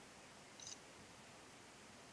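Near silence: faint room hiss, with one brief, faint high-pitched rustle or tick a little over half a second in.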